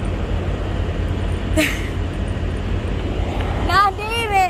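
Steady low rumble of idling vehicles. Near the end a woman's high-pitched, sing-song voice calls out.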